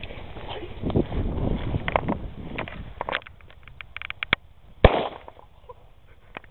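A lit fuse fizzing and crackling, then one sharp bang about five seconds in as the charge packed into a grapefruit goes off and blows the fruit apart.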